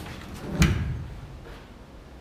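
A single heavy clunk about half a second in, from the pickup's tailgate being lowered and catching on its support cables, with a short ring after it.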